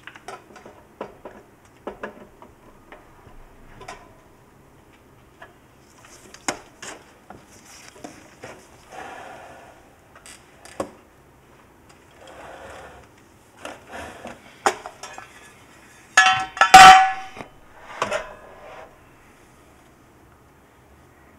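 Small stainless-steel ultrasonic cleaner being handled: scattered light clicks and metal clinks, then a louder metal clatter about sixteen seconds in as its lid comes off and the wire basket rattles in the tank.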